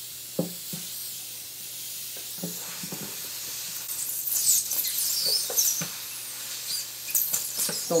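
Steam hissing steadily from a luthier's steam needle held against an acoustic guitar's pickguard, turning into irregular crackling about halfway through as the steam works under the pickguard and softens the glue.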